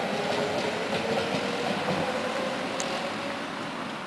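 Two-car electric tram running along its track and moving away, its rolling noise carrying a thin whine that rises slightly in pitch and dies out a little after three seconds in.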